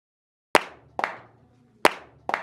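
Half a second of silence, then three sharp percussive hits, at about half a second, one second and nearly two seconds in. Each hit trails off in a short ringing echo.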